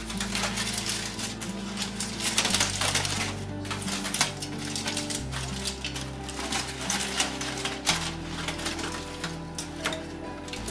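Aluminium foil crinkling and crackling in irregular bursts as it is pulled open off a roasting pan, over background music with slow, held bass notes.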